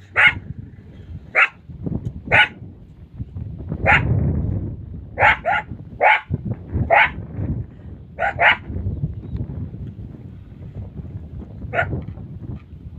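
Jackals yipping: about a dozen short, sharp, high calls at irregular intervals, some in quick pairs, over a low rumble.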